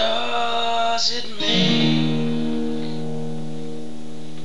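Acoustic guitar strummed at the start and again about a second and a half in, then the chord is left ringing and fading slowly: the closing chord of the song.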